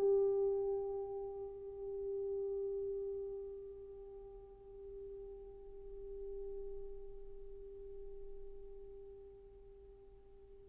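A single piano note, struck twice just before, left ringing and dying away slowly over about ten seconds. Its loudness swells and fades gently as it decays.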